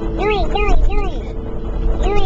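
A girl singing a string of nonsense 'doing' syllables, each one rising and falling in pitch: about four quick notes in the first second, then a short pause. A steady car-cabin rumble and drone runs underneath.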